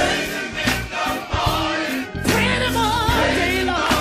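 Gospel music: a choir sings held, wavering notes over a band with bass and drums.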